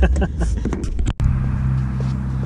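Two men laughing in an open-top Daihatsu Copen over the low hum of its engine; a little over halfway through the sound cuts off abruptly to a steady low engine hum.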